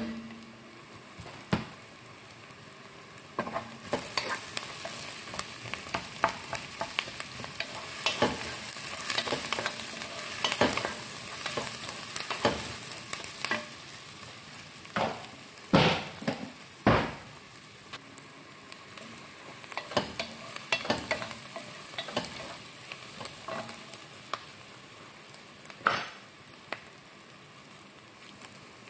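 Chopped onions and garlic frying in a pan with a steady sizzle, while a wooden spoon stirs them, scraping and knocking against the pan many times, the loudest knocks about halfway through.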